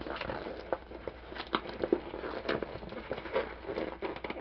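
A mailed package being handled and opened: irregular rustling and crinkling of packaging with small scattered clicks.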